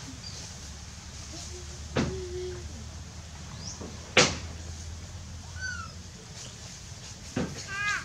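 A few short, high-pitched squeaky calls from a small young animal, some falling in pitch, with three sharp clicks in between; the loudest click comes about four seconds in.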